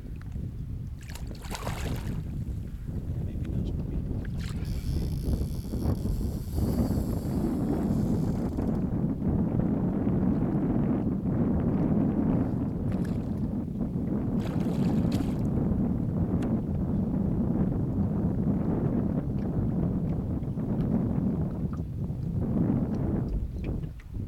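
Wind rumbling on the microphone and choppy lake water slapping against a wooden rowing boat, with a few knocks from the boat. A higher hiss comes in for a few seconds about five seconds in.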